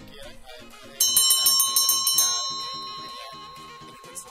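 Bell-ring sound effect for a subscribe-bell animation: about a second in, a loud rapid trill of bright bell strikes for just over a second, then one tone ringing on and fading away. Background music plays underneath.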